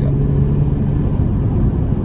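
Car cruising at highway speed, heard from inside the cabin: a steady low rumble of engine and tyres on the road, with a constant low hum.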